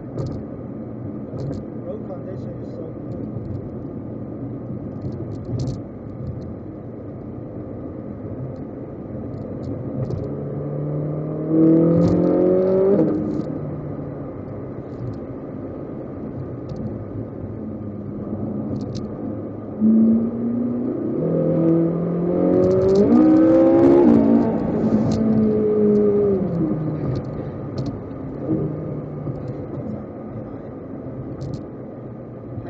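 Ferrari 458 Italia's V8 engine running under a steady drone, with two bursts of acceleration where the engine note rises in pitch: one about eleven seconds in, lasting about two seconds, and a longer one from about twenty seconds in that climbs in steps before falling away.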